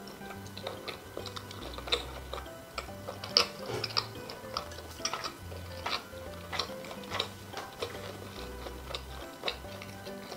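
Close-miked mouth sounds of eating cold radish-kimchi noodles: irregular wet clicks and smacks of chewing, a couple of them sharper near two and three and a half seconds in, over soft background music with a slow low bass line.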